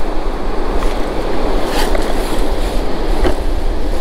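Ocean surf washing up the beach, with wind rumbling on the microphone and a couple of short clicks, one near the middle and one near the end.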